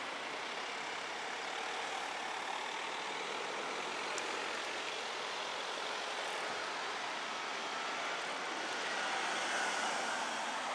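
Steady traffic noise of a queue of cars rolling past at low speed, tyres and engines making an even hiss.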